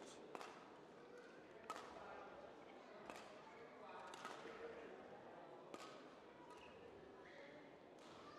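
Near-quiet badminton hall between rallies: faint room tone broken by about five short, faint clicks and knocks, spread out and spaced a second or more apart.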